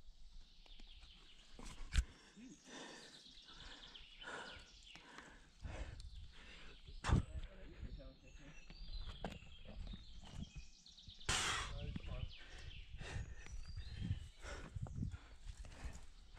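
A climber's hands and shoes knocking and scuffing against rock holds during a climb, in an irregular run of small knocks. Sharp knocks stand out about two and seven seconds in, and there is a short hissy rush a little past the middle.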